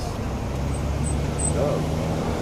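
A motor vehicle's engine running with a steady low hum, setting in about a third of a second in, amid outdoor traffic noise.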